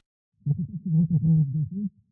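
A deep, muffled man's voice, with no clear words, starting about half a second in.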